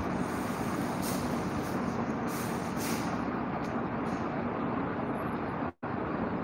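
Steady rushing background noise with a faint low hum, dropping out to silence for an instant near the end.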